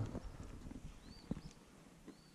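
Quiet outdoor background with a few scattered soft clicks, the loudest about a second and a quarter in, and a faint short high chirp just after one second.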